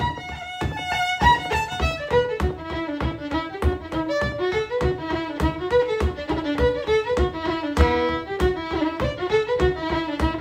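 Solo fiddle playing an Irish traditional tune, a single melody line of quick, evenly paced bowed notes at a moderate tempo.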